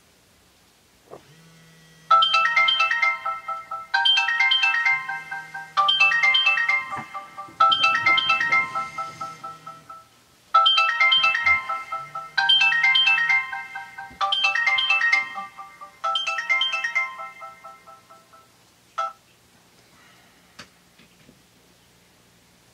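Mobile phone alarm ringtone: a bright, chiming melody phrase repeated about every two seconds, eight times, stopping a few seconds before the end. A low buzz comes and goes beneath it.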